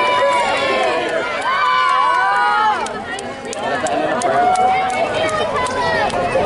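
Many overlapping voices of a street crowd talking and calling out, with no words that can be made out, dropping briefly about halfway through. Horses' hooves clop on the asphalt underneath as a horse-drawn wagon and riders pass.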